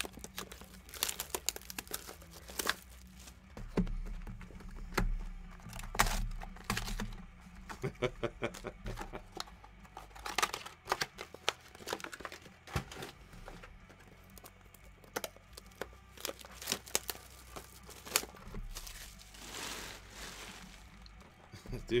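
Plastic shrink wrap being torn and crumpled off sealed trading-card boxes: irregular crinkling and crackling with sharper snaps throughout.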